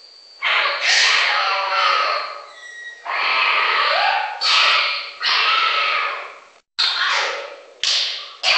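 Harsh, screeching animal calls from a synthetic safari sound effect, about seven in quick succession. Each starts suddenly and fades away.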